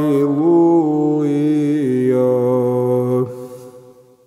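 A lone man chanting in Orthodox psalm style, holding long notes that step up and down in pitch, then fading out about three seconds in.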